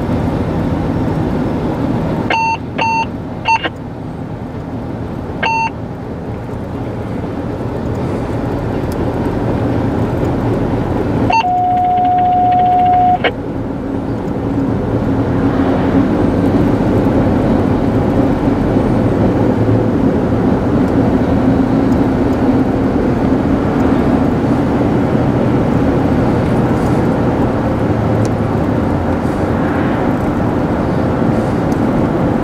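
Road and engine noise heard inside a moving car, growing louder about halfway through as the car picks up speed. A few seconds in there are four short electronic beeps, and near the middle a steady electronic tone lasting about two seconds.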